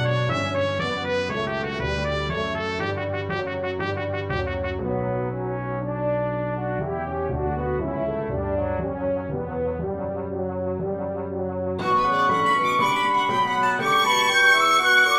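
Orchestral brass from notation-software playback: trumpets, horns and trombones play repeated short notes, then lower held chords. About twelve seconds in, a louder, brighter passage enters.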